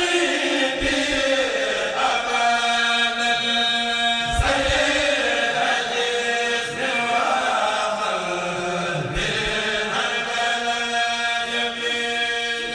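A kourel, a Mouride choir, chanting a khassida in unison with long held notes, pausing briefly between phrases about four and nine seconds in.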